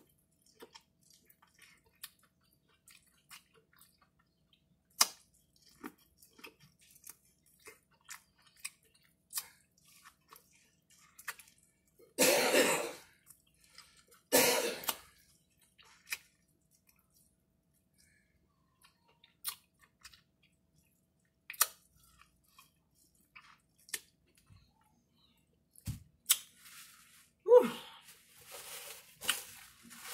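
Close-up mouth sounds of eating corn on the cob: sparse wet clicks and smacks of chewing. Two louder coughs come about two seconds apart near the middle, and near the end a paper napkin rustles against the face.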